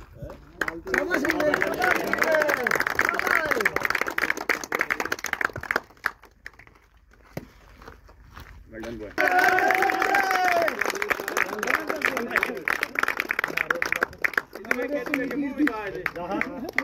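A small group of people clapping by hand in two long bursts with a short lull between, men's voices calling out over the clapping.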